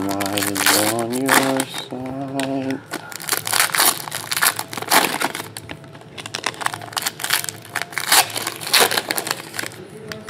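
Foil trading-card pack wrappers crinkling and crackling in quick, irregular bursts as hands open packs and handle the cards. For the first three seconds a voice holds a few drawn-out pitched notes without words.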